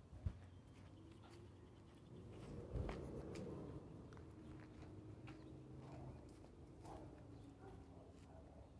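Faint footsteps and phone-handling bumps while walking outdoors, with a sharp bump just after the start and another near the three-second mark, over a faint steady hum.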